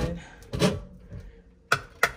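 A glass pickle jar handled and set on a wire pantry shelf: a soft knock about half a second in, then a sharp clink near the end.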